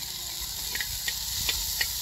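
Chopped onion, tomato and green chilli frying in hot oil in a wide metal pan over an open fire, a steady sizzle with a few sharp clicks and crackles in the second half.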